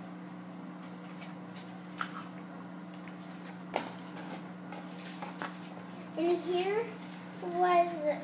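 A steady low hum in a small room, broken by two light clicks a couple of seconds apart, then a young girl's voice comes in near the end.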